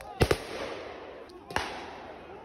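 Loud explosive bangs: a close pair about a quarter of a second in, then another single bang about a second and a half in, each with a short echoing tail.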